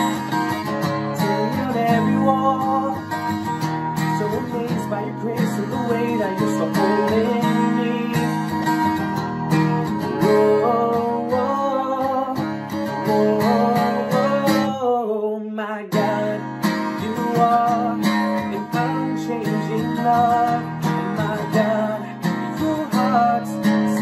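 A man singing a worship song while strumming an acoustic guitar. About fifteen seconds in, the strumming stops for about a second as a sung note falls, then picks up again.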